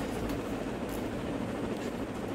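Steady background noise in a pause between speech: an even hiss and low rumble with no distinct events.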